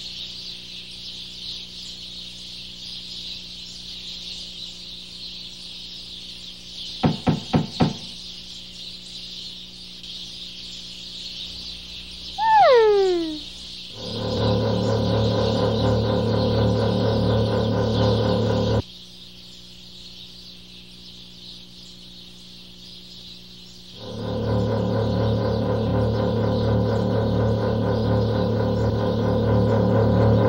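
Animated-film soundtrack: a steady high hiss throughout, four quick clicks about seven seconds in, and a falling whistle-like call about twelve seconds in. Two stretches of sustained music follow, with a pause of about five seconds between them.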